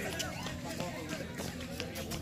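People's voices talking, mixed with a few short clicks and knocks.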